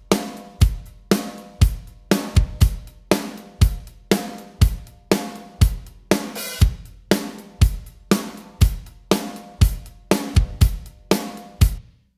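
Recorded acoustic drum kit playing a steady country groove: kick and snare hits about twice a second under hi-hat and cymbals. Playback stops abruptly near the end.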